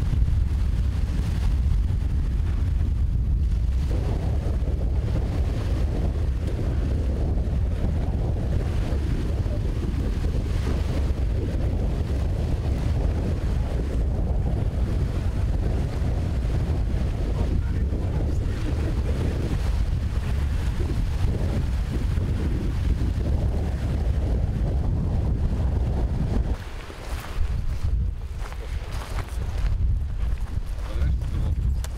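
Strong wind buffeting the microphone in a steady low rumble, over the wash of choppy lake water. The rumble drops away sharply near the end.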